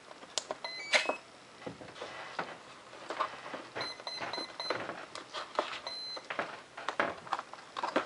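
Electronic speed controller of a 70 mm electric ducted fan sounding its power-up tones through the motor as the 4-cell 14.8 V lipo is plugged in: a short run of stepped tones, then four short beeps (the cell count), then one longer beep as it arms. Clicks and rustling of wires and connectors being handled run throughout, with a sharp click about a second in.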